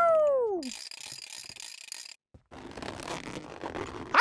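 A cartoon sound effect: a pitched tone slides steeply down, then soft mechanical clicking and whirring follows in two stretches, with a brief break about two seconds in.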